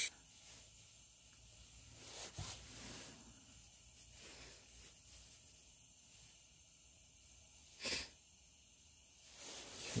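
Quiet handling at a workbench: a shop rag rubbing over a small brass lantern valve part, with a faint click of metal, and one short sniff about eight seconds in.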